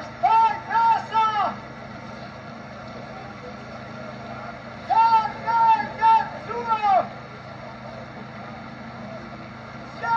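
A man's funeral lament (vajtim): loud, high-pitched wailing cries in short arched phrases. Three cries come near the start and four more about halfway through, over a steady background hum.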